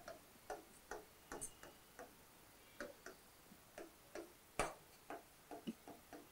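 Stylus writing by hand on an interactive display board: about fifteen faint, irregular taps and short scratches as the letters are formed, the sharpest about two-thirds of the way through.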